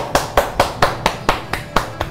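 A person clapping steadily by hand, about four claps a second, in applause.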